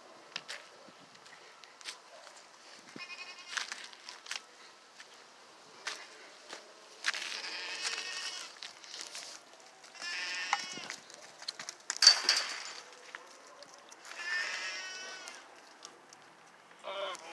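Goats bleating as they come to a fence: four or five wavering bleats a few seconds apart, one of them loudest about twelve seconds in.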